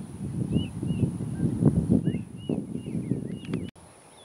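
Wind buffeting the microphone in uneven gusts, with a small bird chirping over it in short, repeated high notes. The wind noise drops away suddenly near the end.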